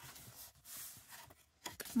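Faint rustling and sliding of folded double-sided scrapbook paper being handled and opened out, with a slightly louder rustle about halfway through. A woman's voice begins near the end.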